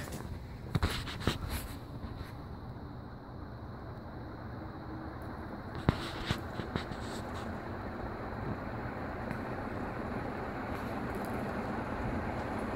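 Crompton Greaves High Breeze ceiling fan starting up and running, a steady whooshing hum that grows slowly louder as it comes up to speed. A few sharp clicks come in the first two seconds.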